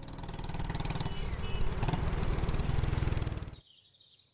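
Motorcycle engine running with a rapid, even beat, growing louder over the first second or two, then cutting off abruptly shortly before the end.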